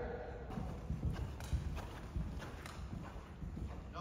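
Horse's hoofbeats on an indoor arena's sand footing: dull thuds in a quick, uneven rhythm, with a voice trailing off in the first moment.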